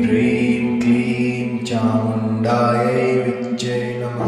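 A voice chanting a Kali mantra in a steady, repetitive recitation, with hissing consonants breaking the syllables, over a sustained drone of low steady tones.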